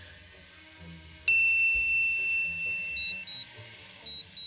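A single bright ding about a second in, ringing and fading over about two seconds, as a 'success' chime effect. Two short high beeps come near the end, over faint background music.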